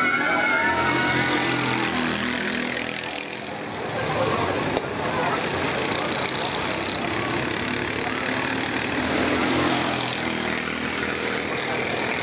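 Racing kart engines buzzing around the circuit. Their pitch rises and falls as the karts accelerate out of the corners and pass by.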